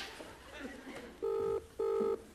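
Telephone ringing tone on the line: short, even electronic beeps in a quick double pattern, starting a little past halfway through.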